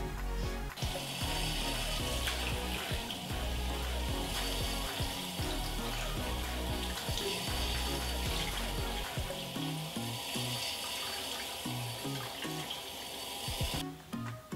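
Bathroom tap running into a sink while cleansing oil is rinsed off the face. The water hiss starts about a second in and stops abruptly near the end.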